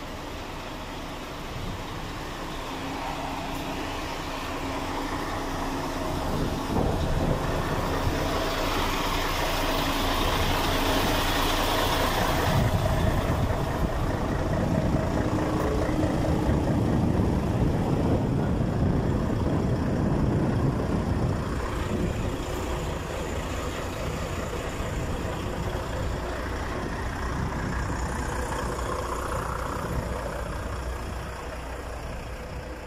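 Diesel engine of a heavy truck idling steadily, growing louder toward the middle. A high hiss runs alongside it for a few seconds and cuts off suddenly about twelve seconds in.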